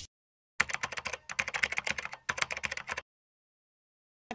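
Computer-keyboard typing sound effect: a rapid run of key clicks starting about half a second in and stopping abruptly after about two and a half seconds.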